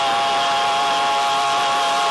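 A vocal trio of two men and a woman holding the final chord of a gospel song in close harmony: one long, steady note with a slight waver.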